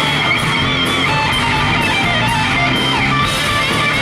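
Hard rock band playing live: distorted electric guitars play a riff over a steady beat, with no vocals.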